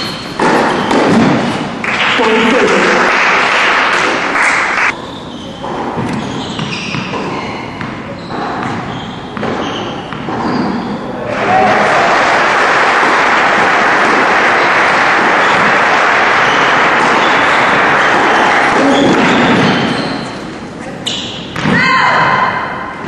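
Tennis in an indoor hall: sharp ball strikes and bounces over the first half, then a crowd applauding steadily for about eight seconds.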